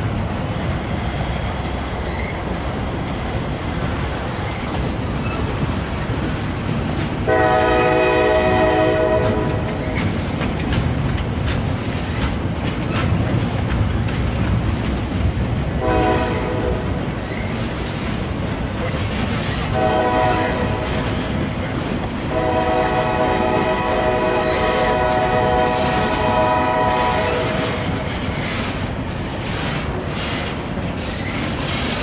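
Loaded flatcars of a long freight train rolling past, the wheels steadily rumbling and clicking over the rail joints. The multi-chime air horn of the lead locomotive, an EMD SD70M, sounds from up the line: four blasts, the last the longest.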